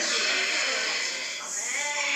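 Voices in a classroom over a noisy recording, with one voice calling out and rising in pitch near the end.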